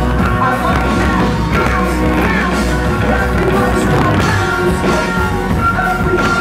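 Live band music with a singer, loud and continuous, with a steady deep bass, recorded from within the concert crowd.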